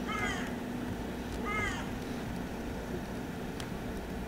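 Two short animal calls, each falling in pitch, about a second and a half apart, over a steady low hum, with a single faint click near the end.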